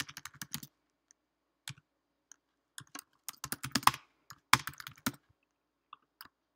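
Typing on a computer keyboard: runs of quick keystroke clicks separated by short pauses.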